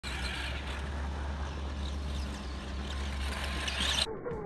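Electric motor and gears of a radio-controlled off-road buggy (Tamiya Super Storm Dragon) running on dirt, its whine growing louder near the end as it approaches, over a steady low rumble.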